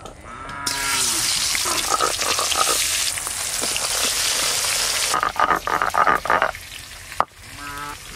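Pieces of pangas fish frying in hot oil in an aluminium kadai: a loud, steady sizzle that starts suddenly about a second in and stops abruptly about five seconds in. After it come pulsed croaking-like calls and a single sharp click.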